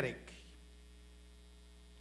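Steady low electrical hum, like mains hum in a sound system, after a man's spoken word fades out at the start.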